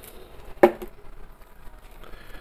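Faint sounds of coarse salt being shaken and sprinkled over sliced beef, with one sharp knock a little over half a second in as the plastic salt shaker bottle is set down.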